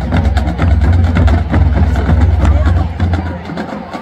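Marching band drumline playing a cadence: quick snare and rim-click hits over bass drums, with crowd voices underneath. The low bass drum sound drops away near the end.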